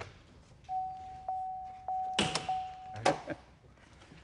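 A car's steady electronic warning tone sounds for about two seconds as the driver's door is opened to pull the hood release. Two thunks follow near the end, as the hood latch lets go, and the tone stops at the second thunk.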